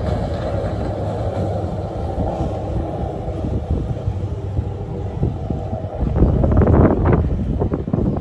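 Outdoor ambience by open water dominated by wind buffeting the microphone, a steady low rumble, growing louder with a cluster of short sounds about six to seven seconds in.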